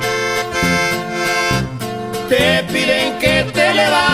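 Norteño music: a button accordion plays over a bass and guitar rhythm, and a wavering vocal line comes in a little over two seconds in.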